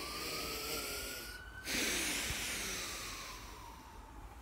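A man's long, heavy sigh: a drawn-out breath in, then a longer breath out starting a little before halfway that slowly fades. A faint whistling tone rises during the breath in and falls away during the breath out.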